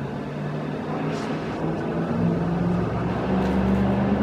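Low, steady mechanical hum of running machinery, with a few low tones that drift slightly upward and grow louder toward the end.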